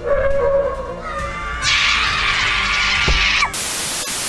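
A cartoon child's scream over background music, cut off about three and a half seconds in by a sudden burst of loud TV-static hiss.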